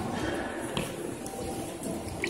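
Faint, indistinct voices with room echo in a large hall.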